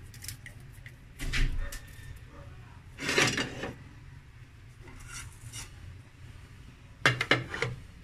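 Salt being sprinkled over raw round scad on a plate, heard as a few short rustling bursts, then a quick run of kitchenware clattering near the end.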